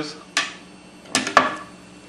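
Steel pinball released down a steep railed ramp and striking an acrylic plastic protector: a sharp click, then about a second later a quick cluster of hard knocks.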